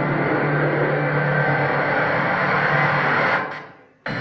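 Soundtrack of a car promotional video played over a hall's loudspeakers: a loud, dense swell with a steady low hum beneath, fading away over the last half second.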